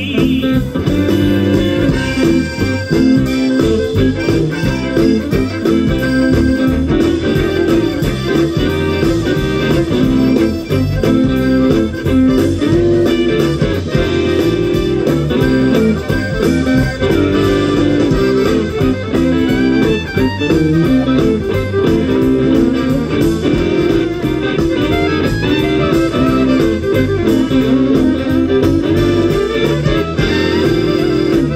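A live Cajun band playing an instrumental passage with no vocals: fiddle, accordion, electric guitars and drums over a steady beat.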